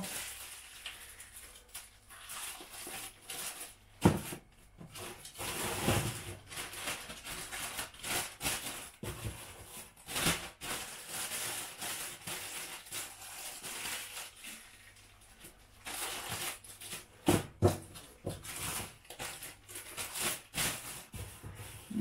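Thin plastic bags rustling and crinkling in the hands as bread rolls are packed into them, in irregular bursts with a sharp knock about four seconds in.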